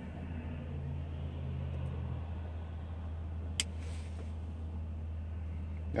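Steady low hum of a car's idling engine heard inside the cabin, with a single sharp click about three and a half seconds in.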